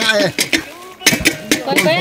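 People talking, broken by a quick run of several sharp knocks about a second in.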